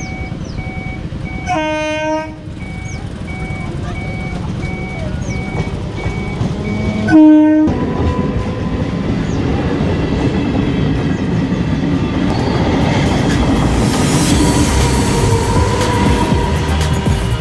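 Kolkata suburban electric local train (EMU) sounding its horn twice, a short blast about a second and a half in and a louder one about seven seconds in. It then rumbles and clatters past close by, growing louder toward the end.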